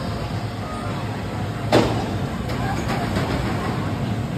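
Steel shuttle roller coaster train rolling down its incline toward the station, a steady rumble of wheels on track with one sharp, loud clack a little under two seconds in and a few lighter clicks after it.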